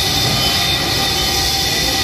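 Steady, loud machinery noise of an industrial plant, with a few thin, high, steady whining tones over it.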